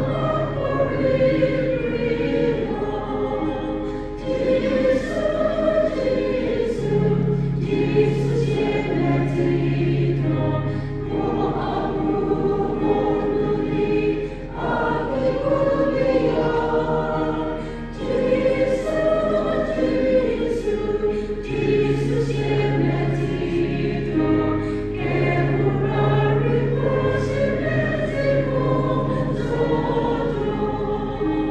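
A choir singing a hymn in Tenyidie in several voice parts, in long held phrases with short breaks between them.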